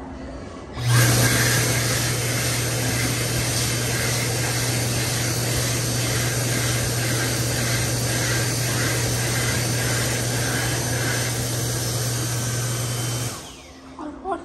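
Dyson Airblade dB hand dryer switching on about a second in and blowing a loud, steady rush of air over a low hum, then stopping near the end.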